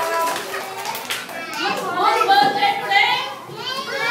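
A group of young children's voices calling out and chattering together, overlapping, louder in the second half.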